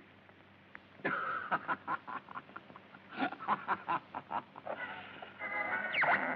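A short passage of music played over a radio, starting about a second in and ending in a held chord.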